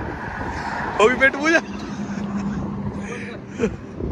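Traffic passing on a highway, with wind on the microphone and a low steady hum from about a second and a half in until shortly before the end.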